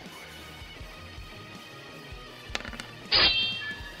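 Soft background music plays under the table talk. Near the end come a few sharp clicks, then a short clatter with a high ringing tone that fades: the virtual tabletop's dice-roll sound for an attack roll.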